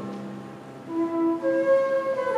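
Baroque transverse flute (traverso) playing a melodic line of held notes. It enters about a second in, as the previous sung phrase and ensemble chord die away.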